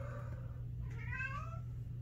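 Domestic cat meowing: a short call at the start and a longer meow that rises and then falls about a second in, over a steady low hum.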